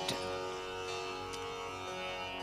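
Steady Carnatic sruti drone: several held pitches sounding together at a low, even level, giving the tonic for the singing.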